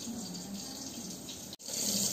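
Steady light hiss. It breaks off sharply about one and a half seconds in, then returns louder and brighter as cooking oil heats in a wok, sizzling lightly.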